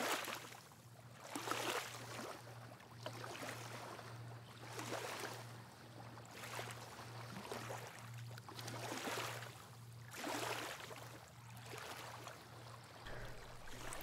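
Small sea waves lapping on a sandy shore, a soft wash rising and falling about every one and a half to two seconds.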